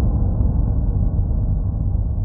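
Deep, gong-like boom of a logo-intro sound effect, ringing on and slowly fading.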